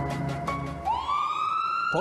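Police car siren starting about a second in, one long wail rising steadily in pitch, after a few closing notes of background music.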